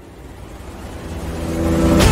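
A low rumbling swell that grows steadily louder, with pitched tones coming in near the end as it builds into music: a rising intro sound effect.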